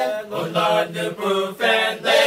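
A group of men singing a cappella in Kosraean, several voices together in one strong chorus, syllable by syllable.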